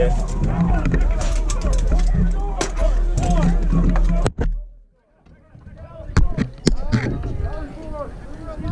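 Voices and shouting of a mock battle with a few sharp knocks, the loudest two about six seconds in. The sound drops almost to silence for about a second near the middle.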